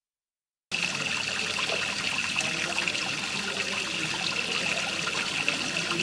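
Water running steadily in a continuous trickle, starting suddenly about a second in after silence.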